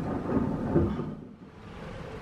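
Rolling thunder from a nearby storm, the low rumble fading away about a second in and leaving a faint steady background noise.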